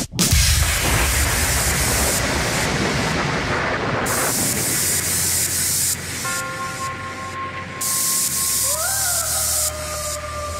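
Electronic dance track in a breakdown. The kick drum stops right at the start and a white-noise sweep fills the sound over a low bass. About six seconds in, a sustained synth line enters and bends upward in pitch near the end.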